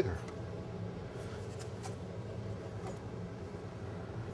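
Faint scraping and light taps of a metal donut cutter being pressed and twisted into floured dough on a countertop, a few times in the first two seconds, over a steady low hum.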